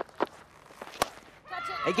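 Cricket bat striking the ball, a single sharp crack about a second in that sends the ball high in the air, with a few fainter clicks before it.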